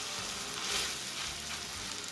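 Seasoned chicken breast sizzling steadily in hot butter and olive oil in a cast iron skillet, just laid in skin side down to sear.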